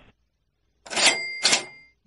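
Cash register "ka-ching" sound effect: two quick strokes about a second in, followed by a bell ringing on, marking the cut to an ad break.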